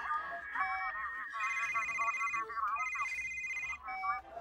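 A telephone ringing: a high electronic ring in two bursts of about a second each, with a short gap between them.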